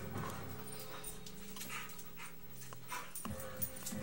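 Pit bulls play-fighting on a bed: scuffling and dog breathing with a few sharp knocks, over faint background music.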